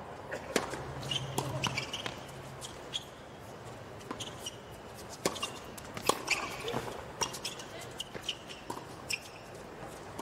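A doubles tennis rally on a hard court: a dozen or so sharp, irregular knocks of racket strings striking the ball and the ball bouncing, in quick volley exchanges, with short high squeaks of shoes on the court.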